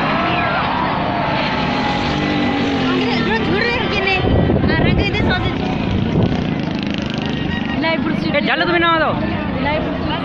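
Jet aircraft engine noise from an air display overhead, heard under a crowd's shouts and calls, which come thickest about halfway through and again near the end.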